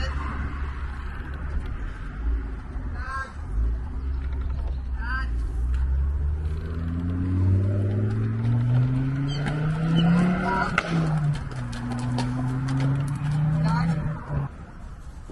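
A vehicle engine speeding up, its pitch climbing steadily over several seconds, dropping about eleven seconds in as if at a gear change, then climbing again over a low steady hum. A few short chirps sound above it.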